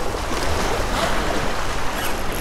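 Small surf waves washing and splashing against shoreline rocks, a steady rushing wash, with wind rumbling on the microphone.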